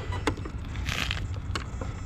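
A few light clicks and handling noise as a hand takes hold of the RC car's body shell, over a low steady rumble, with a short hiss about a second in.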